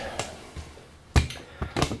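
A dull thump a little past a second in, followed by a couple of lighter knocks.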